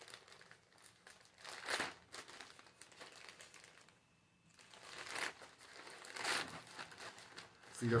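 Plastic mailer packaging crinkling and rustling as it is handled and pulled open by hand after a slit is cut in it, in irregular rustles with a short quiet pause about halfway through.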